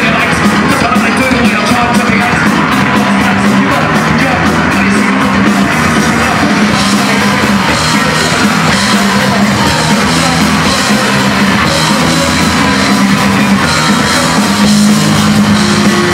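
Punk rock band playing live and loud: electric guitars, bass and drums, with a fast steady beat through the first few seconds.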